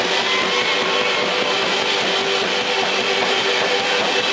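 Loud live rock band playing, with electric guitars holding steady notes over a dense wall of sound.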